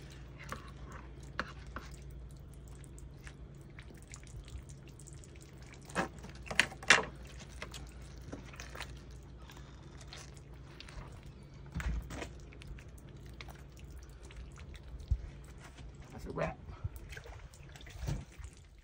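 Wet handling of a skinned rabbit carcass over bowls of water: dripping and small splashes. A few short sharp clicks stand out, the loudest about six to seven seconds in.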